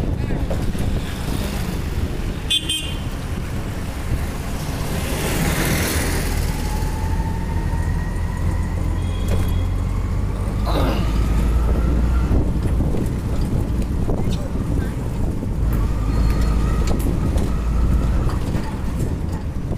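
Auto-rickshaw's small engine running as it drives through city streets, heard from inside the open cabin with road noise, its pitch rising as it picks up speed a couple of times. Short horn toots from the traffic sound now and then.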